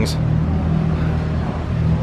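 A motor vehicle's engine running on the street, a low steady hum.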